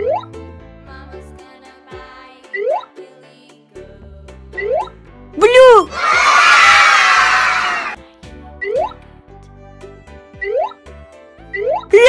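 Children's background music with short rising cartoon sound effects, about one every two seconds. About five and a half seconds in, a rising-then-falling glide is followed by a loud, noisy burst lasting about two seconds.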